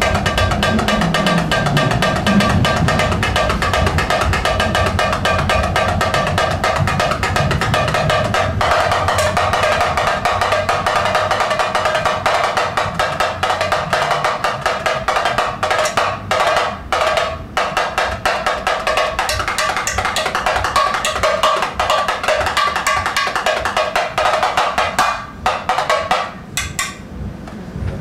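Remo samba tambourim, a small Brazilian hand-held drum with a Skyndeep clear-tone head, struck with a single stick in a fast, continuous samba pattern, giving a bright, ringing pitched tone. The playing breaks off briefly a couple of times past the middle.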